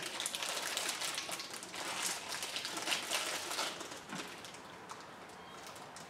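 Plastic snack wrappers crinkling and rustling in the hands, a quick irregular crackle that thins out and gets quieter near the end.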